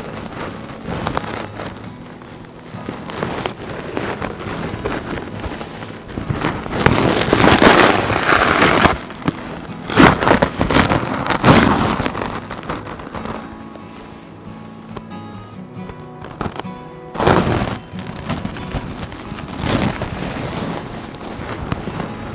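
Background music, with several loud bursts of rustling as a tussar silk saree is handled and spread out close to the microphone, the loudest in the middle stretch and one more later on.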